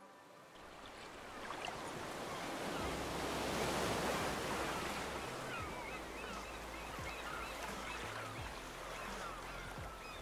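Small waves washing onto a sandy beach, fading in over the first few seconds and then holding steady.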